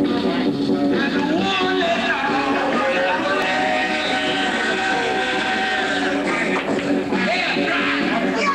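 Music playing, a song with steadily held notes.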